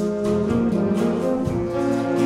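A military concert band of woodwinds, brass and percussion playing a beguine. Sustained brass and reed chords sound over a steady rhythmic pulse.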